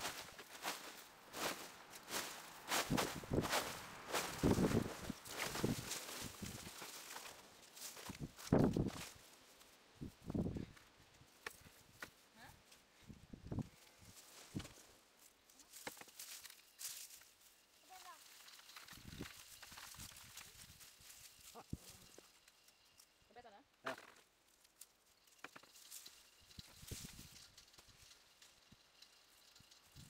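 Rustling and crackling of dry cardboard, wire mesh and withered potato stems as a potato tower is pulled apart by hand. Then the crumble and scrape of dry soil as hands dig through it. The noises come thick and fast in the first third, then sparser.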